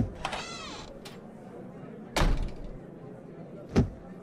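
A plastic storage box's lid being slid and handled: a click and a short squeak, then two knocks about a second and a half apart, the first a heavier thud.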